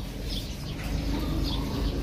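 Birds calling in the background: short high chirps repeating about every half second.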